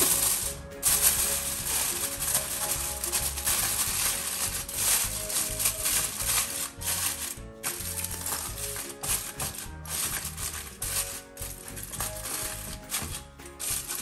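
Aluminium foil crinkling and rustling as hands fold and crimp it closed, over background music.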